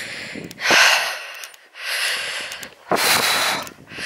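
A person breathing heavily and close to the microphone: three loud, hissing breaths, each about a second long.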